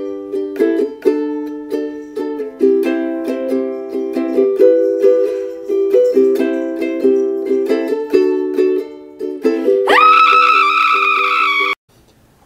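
Ukulele strummed in quick, steady chords for about ten seconds. Near the end a long, high-pitched voice cries out over the last chord and is cut off abruptly.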